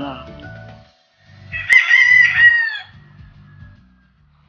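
A rooster crowing once, one long call of about a second and a half in the middle, over background music with a repeating low beat.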